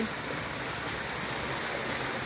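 Pool waterfall running: a sheet of water pouring from a stone-wall spillway into the pool, a steady splashing rush.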